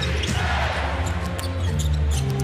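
Basketball being dribbled on a hardwood court, heard as irregular short knocks, over arena music playing sustained low bass notes that shift pitch near the end.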